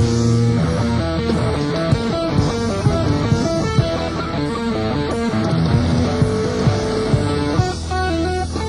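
Live rock band playing, with electric guitar to the fore over bass, keyboards and drums.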